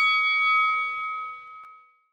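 A struck bell tone ringing out and fading steadily away, dying to silence near the end.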